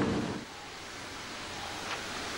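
Rushing, churning water from a swimmer cuts off about half a second in, leaving a steady, even hiss.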